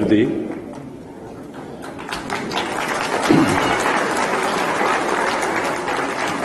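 Audience applauding in a hall, the clapping swelling from about two seconds in and then holding steady. A single voice is heard briefly midway.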